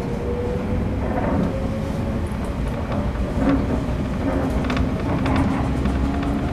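Electric train running, with a steady low rumble and a motor whine that rises slowly in pitch as it gathers speed, plus scattered light clicks.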